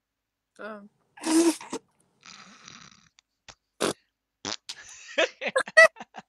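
Short bursts of voices and non-word vocal noises, with quick bursts of laughter near the end.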